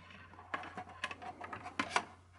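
Ethernet cables and RJ45 plugs being handled at a network switch: light rustling and a few faint clicks, with two sharper clicks near the end.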